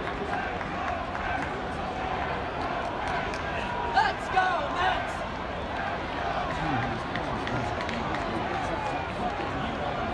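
Ballpark crowd chattering steadily in the stands, many voices blending together. About four seconds in a single sharp pop cuts through, followed by a short burst of raised voices.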